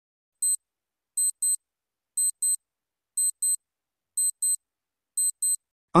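Countdown timer sound effect: short, high electronic clock ticks, mostly in pairs, repeating about once a second.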